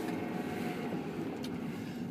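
Steady road and engine noise of a moving car, heard from inside the cabin.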